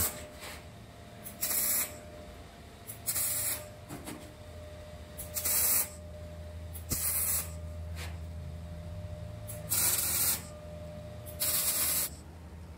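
A MIG welder laying six short tack welds on sheet-steel panels. Each tack is about half a second of hissing arc noise, one every one and a half to two seconds, with a faint low steady hum between them.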